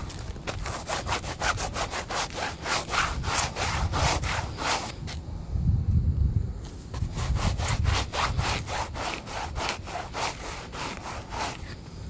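Sneakers (Reebok ZigTech running shoes) scraped rapidly back and forth on rough pavement and curb concrete, about four to five rubbing strokes a second. The strokes pause for about a second and a half around five seconds in, then resume.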